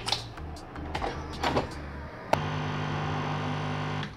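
Clicks and knocks as the lever of a capsule coffee machine is lifted, a capsule put in and the lever pressed shut. About two seconds in, a sharp click and the machine's pump starts a steady, loud hum as it brews.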